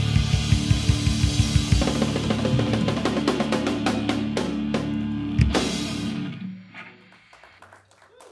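Live rock band of drums, electric guitars and bass playing the closing bars of a song: fast drumming at first, then held guitar chords with sparser drum hits. A last big hit comes about five and a half seconds in, and the sound dies away within about a second after it.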